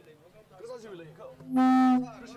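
A loud, steady horn blast on one low note begins about one and a half seconds in and lasts about half a second, over faint background voices.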